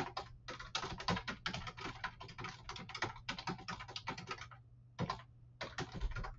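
Typing on a computer keyboard: a quick run of keystrokes for about four and a half seconds, a short pause, then a few more keystrokes near the end, over a faint low hum.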